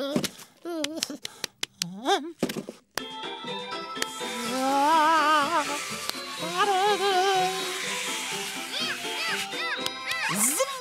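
Cartoon soundtrack: a penguin character's wavering gibberish voice for the first few seconds, then music with held notes and a warbling melody over a steady hiss.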